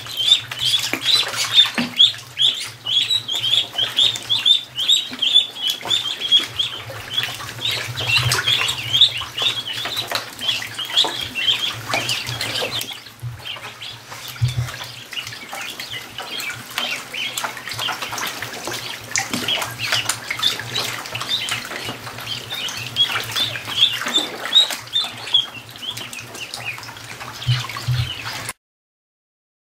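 A flock of about fifty ducklings peeping constantly and all together, a dense chorus of short high chirps. The chorus drops in loudness about halfway through.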